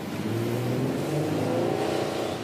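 Nissan Elgrand minivan's 3.5-litre V6 accelerating at half throttle, its engine note rising steadily.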